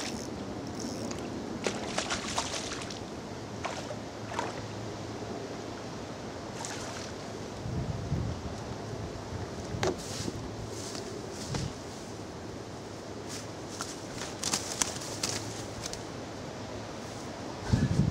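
A zander being played and landed on a spinning rod: scattered short clicks and a couple of low knocks around the middle, over a steady hiss of wind and water.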